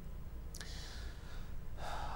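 An audible intake of breath near the end, just before a man begins to speak, with a faint mouth click and hiss about half a second in. A low steady hum runs underneath.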